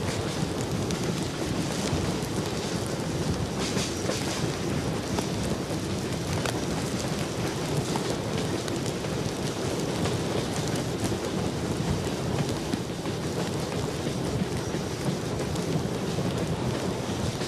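Steam-hauled passenger train under way behind Reading 4-8-4 No. 2102: a steady, dense rumble and roar with no distinct exhaust beats.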